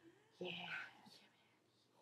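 A girl's voice saying a few quiet words about half a second in ("we here? Yeah."), then near silence: room tone.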